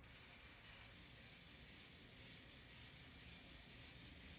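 Faint whirring of a small, cheap hobby servo motor sweeping its arm back and forth, with a fine regular pulsing from its step-by-step movement.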